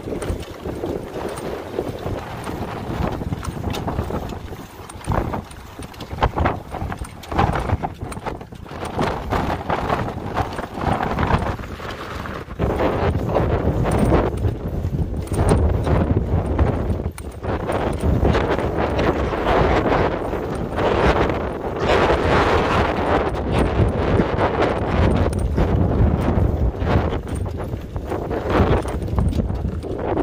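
Strong, gusting storm wind buffeting the microphone, surging and easing every few seconds and heavier from about halfway through.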